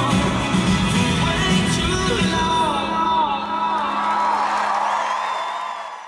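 Live country-rock band playing the end of a song: full band with drums until about halfway through, then the drums stop and a held chord rings with wavering high lines, fading out near the end.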